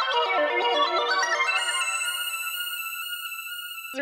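Cherry Audio DCO-106 software synthesizer, a Juno-106 emulation, playing a fast run of bright arpeggiated notes on the 'Backwards Droplets' preset. About halfway through the run thins out to a couple of held high tones that fade away.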